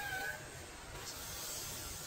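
A cat meowing once, briefly, right at the start, over a steady wash of running water.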